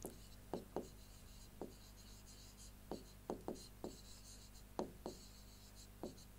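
Marker pen writing on a board: about ten short, faint strokes, some in quick pairs, as letters are written out.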